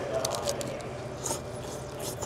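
Someone biting into and chewing a sandwich made with a dill pickle in place of bread, giving a few short, faint crunches.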